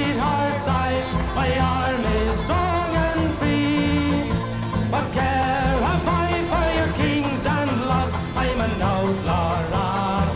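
Irish folk band playing a rebel ballad: a male voice sings the verse melody over strummed acoustic instruments with a steady beat.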